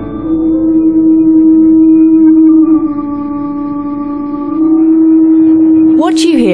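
Singing flexible gas riser: flow-induced pulsations make a loud, steady howling, whining tone with overtones. The tone drops slightly in pitch and loudness about three seconds in and returns near five seconds. The howling possibly indicates a serious problem: pulsations and vibrations that can cause fatigue cracks or gas leakage.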